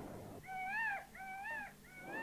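Rhesus macaque giving short coo calls, three in a row, each rising and then falling in pitch; the third comes at the very end.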